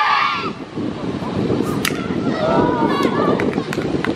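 A high shout, then two sharp cracks close together a little under two seconds in, as a bat is broken with a karate strike; onlookers' voices follow.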